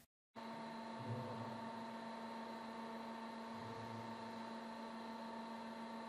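Faint steady electrical hum with a light hiss and a few steady tones. It cuts in abruptly just after the start, in a pause between recited lines.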